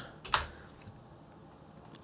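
Computer keyboard keystrokes as numeric values are typed in, with one sharp click about a third of a second in, then a quiet stretch.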